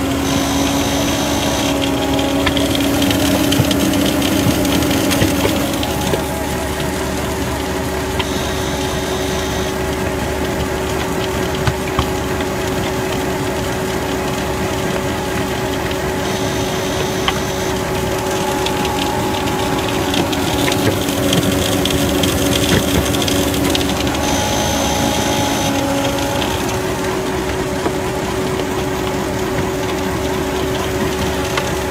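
Bay-Lynx volumetric concrete mixer running while it mixes dry concrete: a steady engine and machinery drone with a gritty churning noise. The drone steps up in pitch about six seconds in, and a higher hiss comes and goes about every eight seconds.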